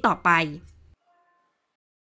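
The last word of a voice-over spoken in Thai, then the sound drops to silence about a second in.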